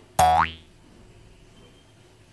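A short cartoon 'boing' sound effect: a springy tone sliding quickly upward in pitch, lasting under half a second, starting just after the beginning.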